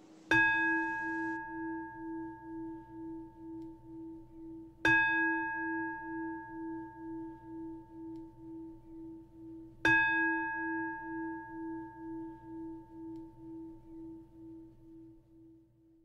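A Zen singing bowl (standing bell) struck three times about five seconds apart, each strike ringing on and slowly fading with a wavering pulse, marking the close of the Dharma talk.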